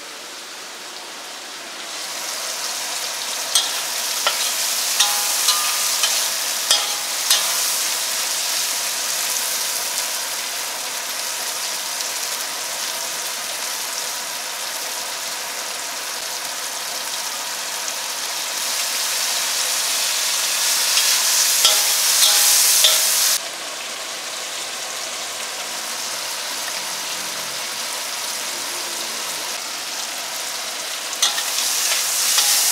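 Prawns and garlic sizzling in hot oil in a wok, a steady hiss with sharp clicks of a metal spatula against the wok. The sizzle swells about two seconds in, is loudest a little past the middle, then drops suddenly.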